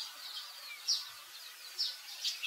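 Outdoor ambience: short, high, falling bird chirps about once a second over a steady, high insect buzz.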